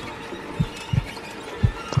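Slow heartbeat sound effect: two low double thuds (lub-dub) about a second apart, over a faint steady drone.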